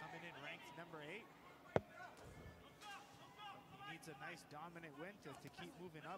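Faint broadcast sound of a kickboxing bout: distant voices from the fight broadcast and arena, with one sharp smack about two seconds in.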